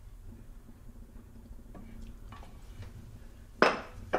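A quiet room with a few faint handling clicks, then one loud, sharp clack of a hard object near the end.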